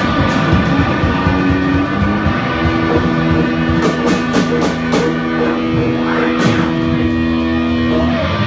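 Live rock band playing, with electric guitars, keyboard and drum kit. Over the second half the band holds a chord while the drummer strikes several cymbal crashes.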